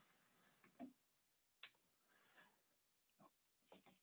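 Near silence, with a few faint, scattered clicks.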